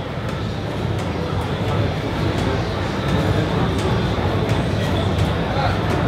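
Steady din of a crowded exhibition hall: many people talking at once in the background, with a low rumble of general noise.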